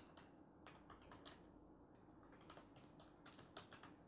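Faint computer keyboard typing: scattered key clicks in two short runs, one about a second in and a quicker one in the second half.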